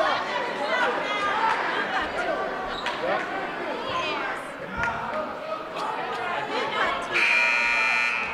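Crowd chatter and voices in a high school gym, then the scoreboard buzzer sounds once near the end, a loud steady tone lasting about a second.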